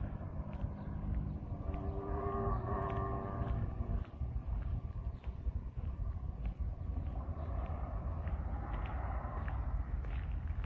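Outdoor street ambience: a steady low rumble, with a faint horn-like tone that rises about two seconds in and fades out by about four seconds.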